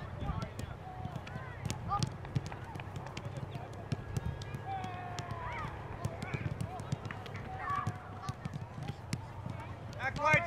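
Soccer balls being kicked and passed on artificial turf: a string of sharp, irregular thuds from several balls at once. Faint distant voices call in the background.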